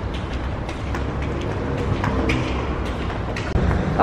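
Steady low rumble of road traffic, with light clicks scattered through it.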